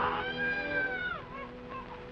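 A long, high, pitched glide, like a meow or a whistle, held for about a second and then falling away, over sustained notes of background music.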